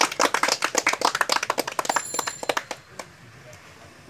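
A small group of people clapping, the claps thinning out and stopping about three seconds in.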